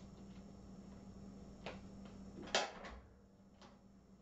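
A low steady hum, then a click, and about two and a half seconds in a sharper knock at which the hum cuts off, followed by two fainter clicks.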